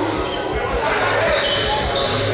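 A basketball dribbling on a hardwood gym floor, repeated thuds about every half second, with players' voices in the hall.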